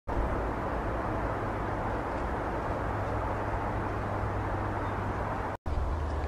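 Steady outdoor background noise with a low hum underneath, with no distinct events. It drops out for an instant near the end, then carries on unchanged.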